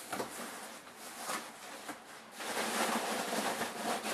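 Rustling and rummaging in a cardboard shipping box of packing material, with a few light knocks, as a hand searches for any bottle left in the box. The rustling gets louder and steadier about halfway through.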